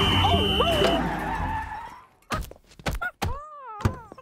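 Cartoon sound effects: a pickup truck's engine rumbling under a high, steady screech of brakes for about a second as it stops short, with squawking. Then a string of separate thuds and short clucking calls as chickens tumble out onto the road.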